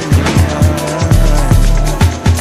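Instrumental stretch of an electronic soul-dance track: a busy kick drum and deep bass in a steady rhythm, under a wavering melodic line.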